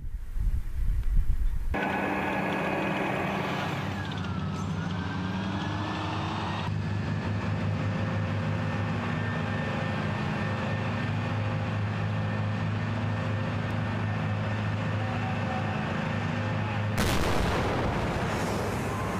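A low explosion rumble for about the first two seconds, then heavy tracked military vehicles' engines running steadily. Near the end a louder, rougher burst of noise comes in.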